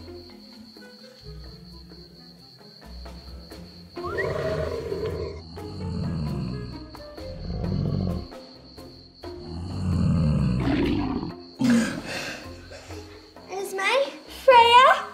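Lion roars, a recorded effect: four long, deep roars starting about four seconds in, the last one the loudest, over soft background music.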